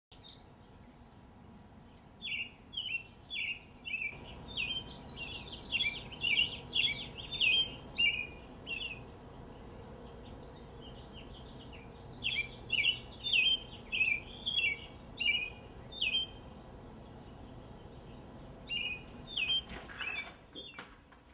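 A songbird calling: a long series of short, downward-sliding chirps, about two or three a second, in two long runs with a pause between and a few more near the end, over a faint steady outdoor background.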